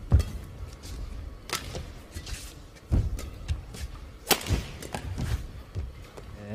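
Badminton racket strikes on a shuttlecock during a rally: sharp smacks about every one and a half seconds, traded between the two players, with the strongest near the start, about three seconds in and a little past four seconds.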